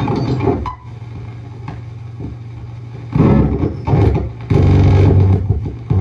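35mm cinema projector sound at the end of a reel. The film soundtrack stops about half a second in, leaving a steady low hum. From about three seconds in, loud rough bursts of noise and hum follow as the tail leader runs through.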